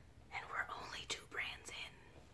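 A woman whispering a few words under her breath.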